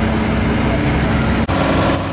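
Vehicle engines idling steadily. The sound breaks off for an instant about one and a half seconds in, and a different steady engine hum follows.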